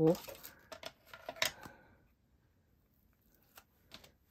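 Light taps and rustles of craft supplies being handled on a desk: a few small clicks in the first two seconds, the sharpest about a second and a half in, then almost nothing until two short clicks near the end.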